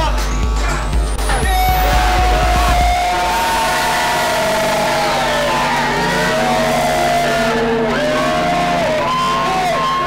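Soundtrack music. A heavy bass section with a rising sweep fills the first three seconds. Then the bass drops away and a melodic line of long held notes carries on at a steady level.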